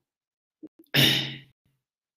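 A man's short breathy sigh about a second in, lasting about half a second, just after two faint clicks.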